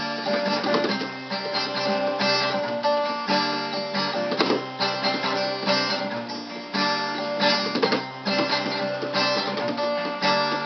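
Acoustic guitar strummed, chords ringing out in a steady, unhurried pattern.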